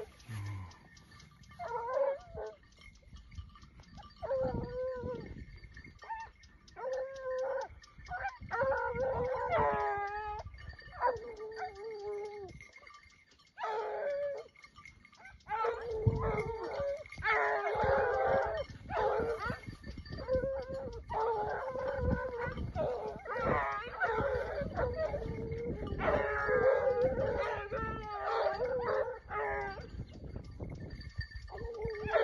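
A pack of Ariégeois scent hounds baying on a wild boar, giving drawn-out, wavering howls in spells. From about halfway through, several hounds call over one another almost without pause.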